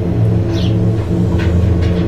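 A steady low drone of several held tones, with a few short high bird chirps over it.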